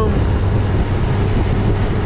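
2018 Honda Gold Wing's flat-six engine humming steadily while cruising at highway speed, mixed with wind rush.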